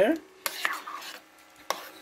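A spoon stirring thick steel cut oatmeal in a slow cooker's crock, with a few short scrapes and taps of the spoon against the pot, about four in two seconds.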